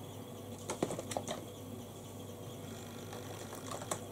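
A few light clicks and taps of makeup containers being handled while searching for a foundation bottle, over a faint steady low hum.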